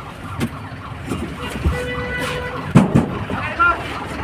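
Bus cabin noise: a steady low engine and road rumble with people's voices. A faint steady horn toot lasts about a second in the middle.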